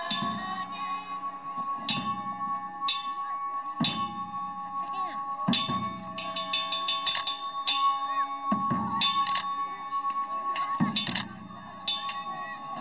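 Ritual masked-dance music: cymbal crashes with drum beats at uneven intervals, with a quick run of strikes around the middle, over a steady high held drone that stops shortly before the end.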